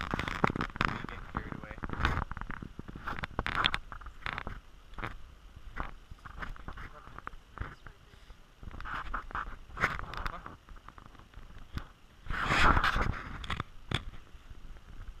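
Footsteps on a dirt trail strewn with dry leaves, heard as irregular crunches and scrapes. A few louder rushing bursts come through, the loudest near the end.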